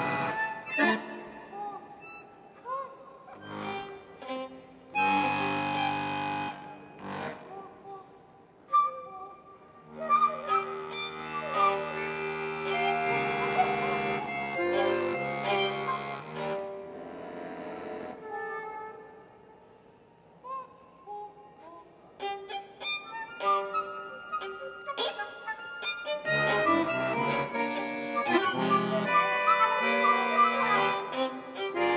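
Contemporary chamber music from a trio of violin, bayan (button accordion) and flute: sustained notes and short figures entering and dropping out as each player answers cues from a projected graphic score. The playing thins to a quiet stretch past the middle, then turns denser with quicker notes near the end.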